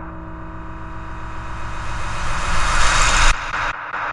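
Background electronic music: a rising swell of noise over a held low chord builds for about three seconds and cuts off abruptly, after which the pulsing beat returns.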